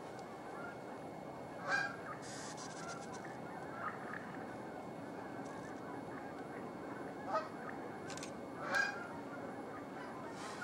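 Outdoor ambience over a steady hiss, broken by four short bird calls, the loudest near the start and near the end, with a brief hiss about two seconds in.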